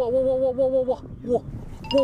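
A man's voice exclaiming in excitement: one long, held 'waaa', then a short 'wa' and another starting near the end.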